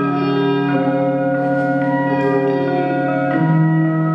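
Ambient music for electric guitar and live electronics: sustained, overlapping guitar tones layered into a slowly changing drone, the lower notes shifting about a second in and again just before the end.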